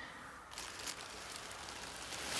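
Black plastic bin bag rustling as a hand grabs it and pulls it aside, starting about half a second in with a few sharper crackles.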